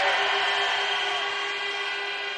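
A single steady pitched tone with rich overtones, holding one note through the pause and fading slightly toward the end.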